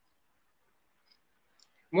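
Near silence: room tone in a pause between a man's sentences, with a couple of faint ticks about halfway through. His voice comes back right at the end.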